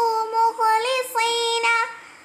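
A child singing an Arabic verse in a high voice, holding long notes, the line trailing off just before the end.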